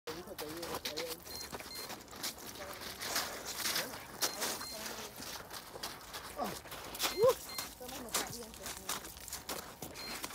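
Sneakers stepping, scuffing and planting on crusty frozen-lake ice, making a rapid, irregular string of sharp clicks and crunches. A few brief vocal sounds come in near the start and again around seven seconds in.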